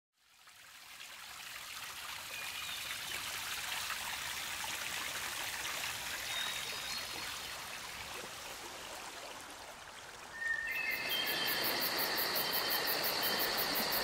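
Steady trickling, running water fading in. About ten seconds in, the sound gets louder as steady high-pitched tones with a fast pulsing trill join the water.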